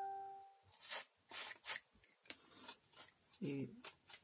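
Faint clicks and rubbing as hands work the opened plastic housing and motor-shaft bushings of a hand mixer, with a bell-like ding fading out in the first half second.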